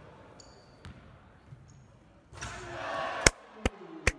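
Gym crowd noise swells just past halfway. It is followed by two sharp basketball bounces on a hardwood court, the first one loud.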